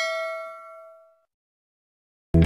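A bell-like 'ding' sound effect, a single struck chime whose ringing tone fades out about a second in.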